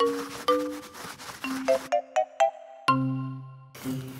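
Short children's-show musical jingle: a quick run of bright, separate pitched notes, each starting sharply and fading, ending on a lower, fuller note about three seconds in.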